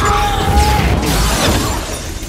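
Movie sound effects of a fiery explosion: a loud, continuous blast of noise with heavy low rumble and shattering debris, and a thin steady high tone held for about the first second.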